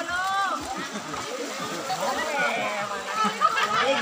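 Many people's voices talking and calling out over each other, with faint water sloshing as people wade through a muddy pond.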